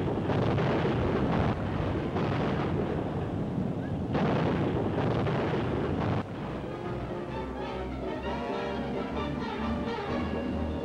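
A dense, continuous barrage of gunfire and explosions, rapid impacts with no gaps. It cuts off abruptly at about six seconds, giving way to orchestral music.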